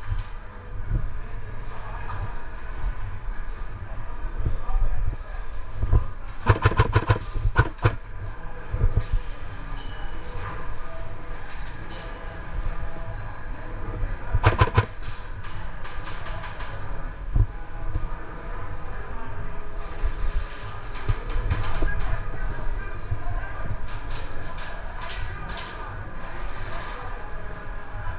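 Airsoft electric guns firing in bursts of rapid clicking, four or five bursts spread through, over a steady low rumble.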